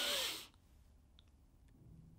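A man taking a deep breath in to maximal inspiration. The airy inhale ends about half a second in and is followed by near silence as the breath is held.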